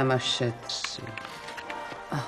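A woman's voice speaking briefly at the start, then faint background music with a short rustle and a few soft clicks.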